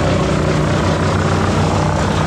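Compact excavator's diesel engine running steadily at working speed while the hydraulic grapple swings over the brush, a continuous engine drone with a steady low hum.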